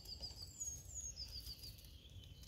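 Faint birdsong: a small bird repeating a quick run of high chirping notes twice, with a high slurred whistle in between, over a low faint rumble.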